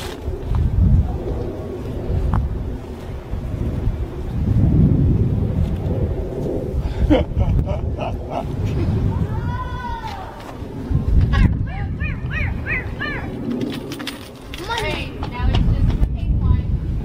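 Uneven low rumble of wind on the microphone outdoors, with short voice-like calls now and then, clustered in the second half.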